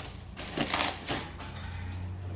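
A clear plastic bag rustling and crinkling as it is handled, in a few short bursts near the middle.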